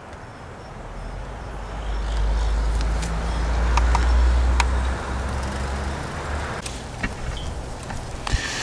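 Low engine rumble of a passing motor vehicle, swelling to its loudest about four seconds in and then fading, with a few light clicks from handling the scale or knife.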